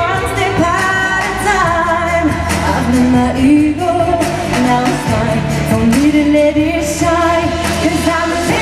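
A woman singing a pop song live at a stage microphone over full backing music.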